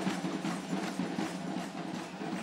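Live drumming at a steady rhythm, about three to four beats a second, over the dense noise of a dancing crowd.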